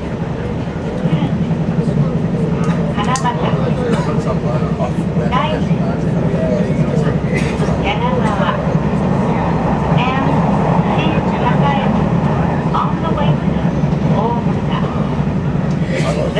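Steady running rumble of an electric commuter train heard from inside the carriage, with indistinct voices talking over it.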